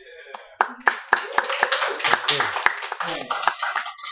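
Small audience applauding with scattered cheers and voices, starting about half a second in and going on to the end.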